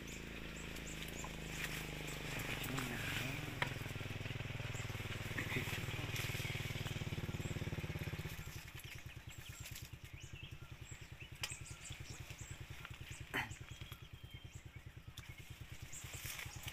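A small engine running steadily, then dropping to a slower, evenly pulsing idle about eight seconds in, with a few sharp clicks over it.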